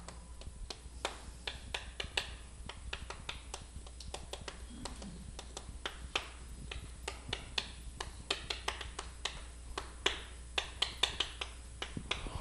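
Chalk writing on a chalkboard: a quick, irregular run of light taps and short scratches as each stroke is made.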